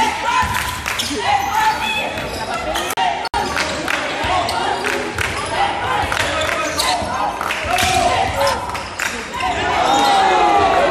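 Basketball being dribbled on a gym floor, its bounces echoing in a large hall, with players' voices calling out throughout. The sound drops out briefly about three seconds in.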